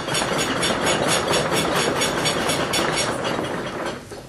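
Audience clapping steadily, applause given as a vote for one answer in a quiz. It tails off slightly near the end.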